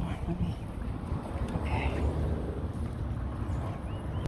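Wind buffeting a phone's microphone: an uneven low rumble that rises and falls.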